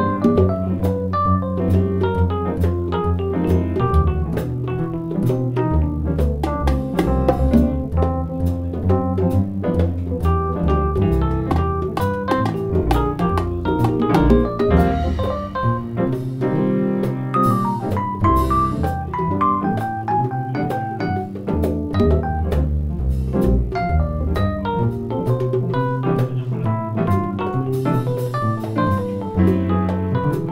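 Live jazz from piano and organ-toned keyboards, with congas played by hand throughout.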